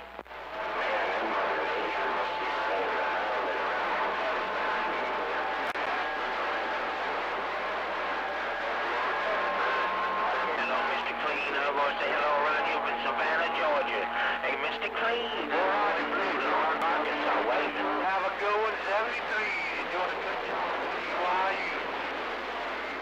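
CB radio receiver playing a crowded channel: a steady wash of static with several unintelligible voices talking over one another. Steady heterodyne whistles at different pitches come and go, with lower ones appearing in the second half.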